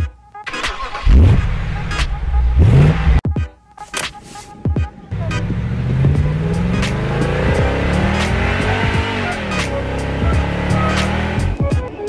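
Car engine revving sound: two quick rising revs in the first few seconds, then a longer stretch of engine running with its pitch rising and falling, over background music.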